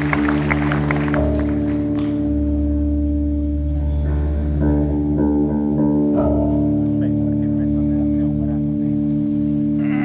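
Live rock band on stage holding long sustained notes on electric guitar and bass over a steady drone, with a few note changes in the middle. Applause dies away in the first second or two.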